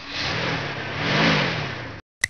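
Car engine sound effect revving as a car pulls away, its pitch rising to a peak a little over a second in and then falling, before it cuts off suddenly.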